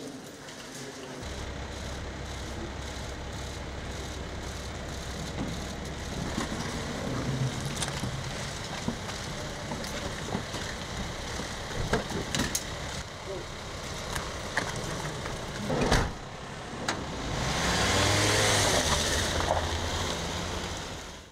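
Van engines running, with a few sharp knocks such as doors shutting, then a louder vehicle pass with a gliding pitch near the end as one drives off.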